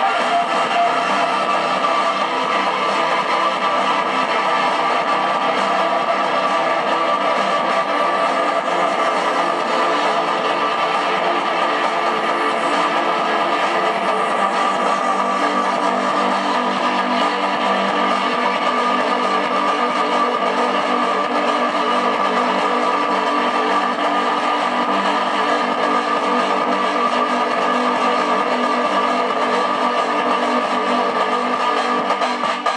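Electronic organ playing an African-beat instrumental piece, with dense sustained notes at an even level throughout.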